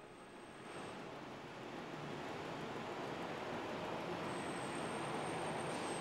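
Street traffic noise, a steady rush of passing vehicles that grows gradually louder.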